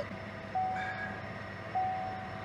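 Car's dashboard warning chime: a single-pitched beep repeating about every 1.2 seconds, sounding about half a second in and again near the end.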